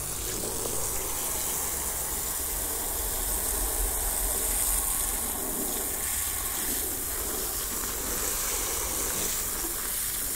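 Garden hose spraying a jet of water onto a valve cover, rinsing off degreaser: a steady splashing hiss of water on metal and the wet ground around it.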